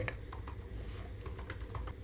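Computer keyboard typing: an irregular run of key clicks as a word is typed in.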